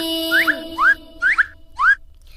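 Instrumental break in a children's recitation song: short upward-sliding whistle-like swoops repeat about twice a second over a soft held synth tone. In the first half second the last long sung note of the verse fades out.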